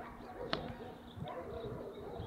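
A quiet lull with faint background sound and a single sharp click about half a second in.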